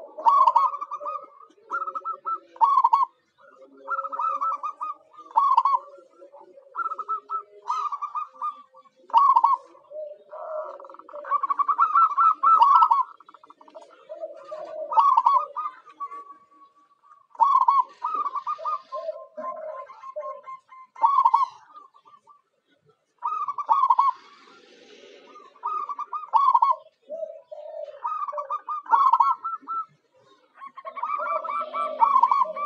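Zebra doves (perkutut) cooing: repeated short phrases of quick, rolling coo notes, with a lower-pitched call overlapping at times and a brief pause a little past two-thirds of the way through.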